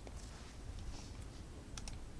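A few faint clicks at a computer, clearest near the end, over quiet room hum.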